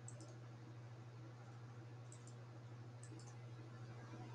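Near silence with a steady low hum and a few faint computer mouse clicks, in pairs, near the start, about two seconds in and about three seconds in.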